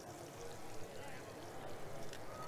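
Faint steady sizzle of food frying in a pan on an electric stovetop, with faint voices in the background.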